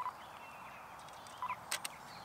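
Nikon Z5 mirrorless camera on a tripod taking a photo: a short electronic beep at the start and another about a second and a half in, then the shutter fires with two quick clicks near the end.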